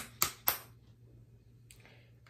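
Plastic bottle of hair product being shaken hard, giving three sharp knocks about a quarter second apart, to drive the product toward the cap of a nearly empty bottle.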